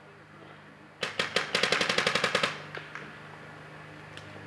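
Paintball marker fired in a rapid string of about a dozen shots, at roughly eight a second, starting about a second in and lasting about a second and a half.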